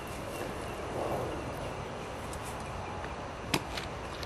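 Plastic water dish knocking against the ground as a West Highland white terrier carries and drags it through grass, with one sharp knock about three and a half seconds in over steady outdoor background noise.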